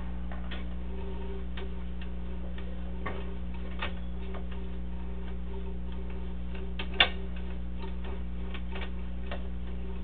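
Sewer inspection camera rig as its cable is pulled back through the line: a steady low hum with irregular ticks and clicks, about one or two a second, and one sharper click about seven seconds in.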